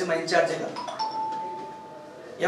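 A two-note electronic chime, a higher note followed by a slightly lower one that fades out over about a second.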